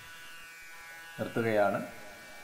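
A man's voice at a microphone, one short utterance about a second in, over a faint steady hum.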